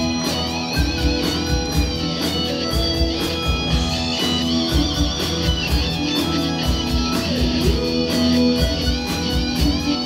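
A live rock band playing an instrumental passage: strummed acoustic guitar and electric guitars over bass and a steady drum beat.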